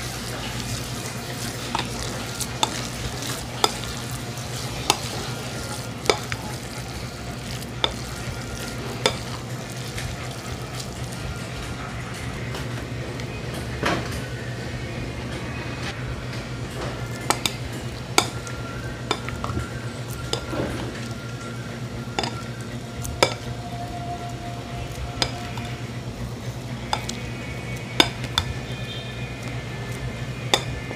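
A plastic spoon stirring sticky glutinous rice in a bowl, knocking and scraping against the bowl in irregular clicks about once a second. A steady low hum runs underneath.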